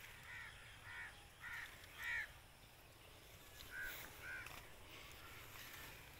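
A bird calling repeatedly outdoors: four short harsh calls about half a second apart, a pause, then two more.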